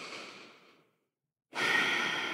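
A person breathing audibly into a close microphone during a guided breathing pause: a soft breath fading out in the first second, then, after a short silence, a louder, longer breath beginning about a second and a half in.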